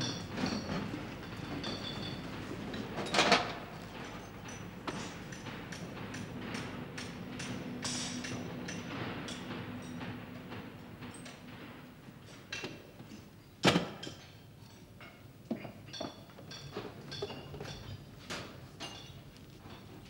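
Workshop knocks, clinks and bangs at irregular intervals, two of them much louder, about three seconds in and near fourteen seconds, over a faint steady hum.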